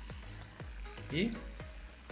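Homemade aquarium filter run by a submersible powerhead, its broken impeller replaced with one made from a medicine cap: a low steady hum, with air and water bubbling at the outlet and many small clicks and pops.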